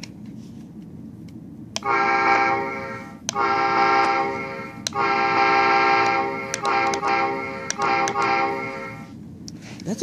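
Horn sound effect of a Lionel LionChief O-scale Metro-North M7 model train, played through the model's onboard speaker. It plays as a series of about six steady, chord-like horn blasts starting about two seconds in: the first three are each about a second and a half long, and the last three are shorter.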